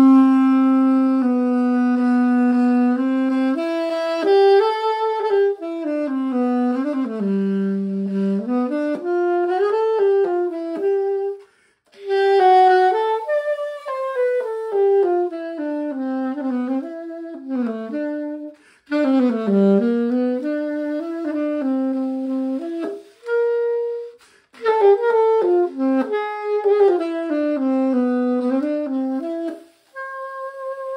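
Conn 6M alto saxophone played solo: improvised melodic lines in the key of A, including an A dominant-seventh arpeggio. It opens on a long held note, then runs through several phrases with short breaks for breath between them.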